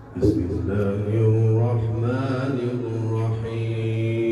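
A man's voice chanting through a microphone and loudspeakers in long, drawn-out notes that waver in pitch, over a steady low hum. A short knock sounds just after the start.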